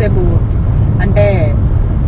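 Steady low rumble of road and engine noise inside a moving car's cabin, with a woman's voice speaking over it in short phrases.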